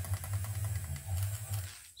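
Eraser rubbing quickly back and forth over paper card, scrubbing out pencil measurement marks; the rubbing stops just before the end.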